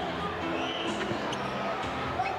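Basketball being dribbled on a hardwood arena court, heard through a TV broadcast over steady arena crowd noise.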